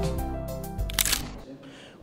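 Podcast intro theme music with a heavy bass line, fading out over the two seconds. About a second in, a short sharp effect sound cuts across it.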